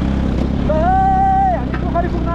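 Motorcycle engine running steadily while riding over a gravel dirt road. A man's voice holds one long note about a second in.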